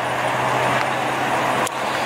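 Road traffic noise, a vehicle passing by as a steady swelling rush, over a steady low hum. A single short click comes near the end.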